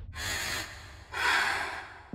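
Two breathy rushes of air from a person, a short one and then a longer, louder one about a second later.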